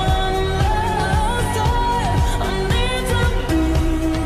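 Pop song with a sung vocal melody over a steady drum beat.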